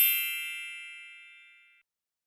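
A single bright, bell-like chime sound effect that strikes and rings out, fading away over nearly two seconds.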